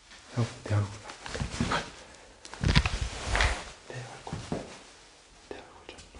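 A low human voice making short wordless grunting sounds and heavy breaths, with a louder rustling bump of handling noise about three seconds in.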